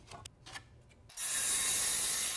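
A tape measure's blade drawn out with a few faint clicks, then, just over a second in, a circular saw cutting across a 2x4, a steady rushing noise.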